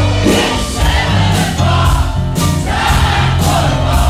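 Rock band playing live in an acoustic set, guitars and bass under a sung male lead vocal, with several voices singing together.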